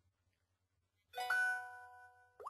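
Phone text-alert chime about a second in: a short ding of several held tones that fades out. It is the alert for a new customer review coming in.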